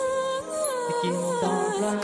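A single voice sings a slow melody that glides up and down over a backing track: the sung opening of a Thai rap song.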